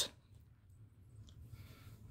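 Near silence: faint room tone with a low hum, and a few faint ticks in the second half.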